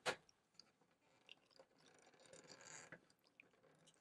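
Near silence with faint handling of a plastic plug-in outlet tester seated in a plug-in power meter: one sharp click right at the start, then a soft rubbing rustle about two seconds in.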